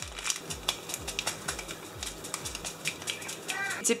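Paper spice packet crinkling as dried herbs are shaken out of it, a run of quick, irregular small ticks and rustles.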